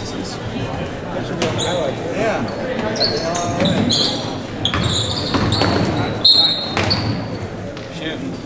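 Basketball game sounds in a gym: a ball bouncing on the hardwood floor and sneakers squeaking in short high chirps, mostly in the middle and later part, over crowd voices and shouting.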